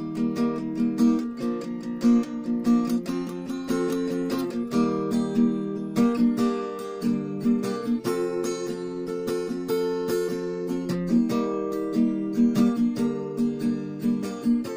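Acoustic guitar with a capo, strummed in a steady rhythm, the chord changing every few seconds.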